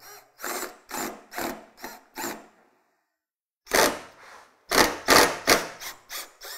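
Cordless impact driver fired in short trigger bursts on a rusted tailgate latch screw: about six quick blips in the first two and a half seconds, a pause, then several louder bursts near the end. The bit is failing to bite because the screw head has stripped out.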